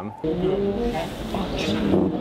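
A group of performers' voices singing long held notes together, over a steady low rumble.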